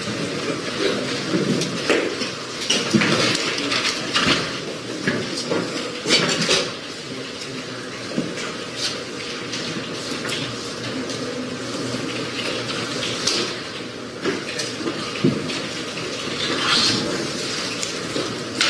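Courtroom bustle: rustling, shuffling and scattered knocks and clicks of people moving about and standing up.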